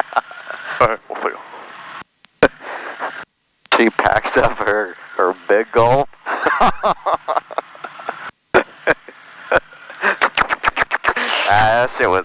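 Voices heard over the cockpit's headset intercom and radio, with a few abrupt cutouts to total silence as the audio gates off and on.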